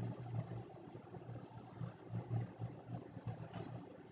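Quiet room tone: a faint, wavering low hum over light hiss, with no speech.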